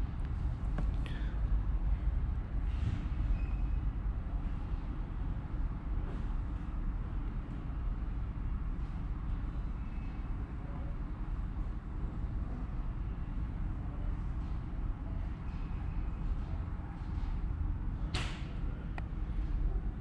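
Steady low background rumble, with a few faint taps and a sharper short click or rustle near the end.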